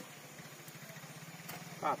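Faint, steady low hum of an engine running, with a short spoken word near the end.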